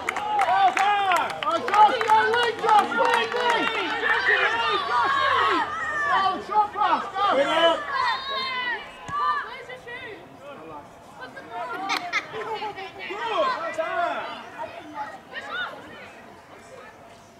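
Many voices shouting and calling out over one another, with young players' high voices among them. The calling is loudest through the first half and thins to scattered calls after about ten seconds.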